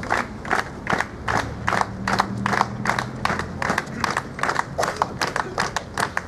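A crowd of protesters clapping in a steady rhythm, about three claps a second, with crowd voices underneath.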